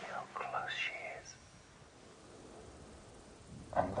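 A man whispering for about the first second, with faint background music underneath. Then a quiet lull with only low hiss, and his voice starts again near the end.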